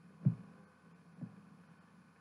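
Two dull, low thumps, the first about a quarter second in and the louder, the second about a second later, over a faint steady hum.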